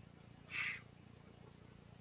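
A man coughs once, briefly, into his fist, about half a second in, against faint room tone.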